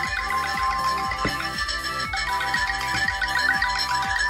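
An electronic ringtone playing on an incoming phone call: a synthesized tune with a steady beat about three times a second under held high notes.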